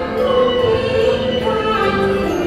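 Cantonese opera song (yuequ) sung by a woman's voice at a microphone, holding and bending long notes over instrumental accompaniment.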